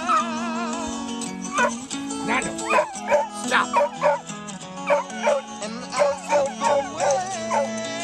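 Background music, with a dog's short yips and whines repeating about twice a second over it from about a second and a half in.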